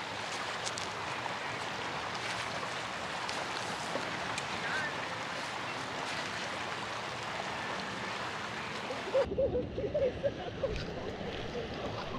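Steady rush of a fast, shallow river running over a gravel riffle. About nine seconds in, the sound turns duller and faint voices come in over the water.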